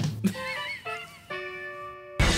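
A short sound effect with a warbling, wavering pitch, followed by a single held tone that cuts off near the end.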